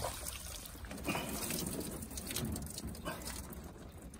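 Water splashing and dripping off a stringer of catfish as it is hauled up out of the lake, with irregular splashes through the lift.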